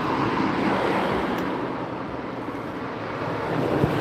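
Road traffic going by, a steady noise with wind buffeting the microphone.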